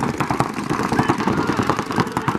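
Paintball markers firing in rapid, overlapping volleys: a dense, irregular crackle of shots.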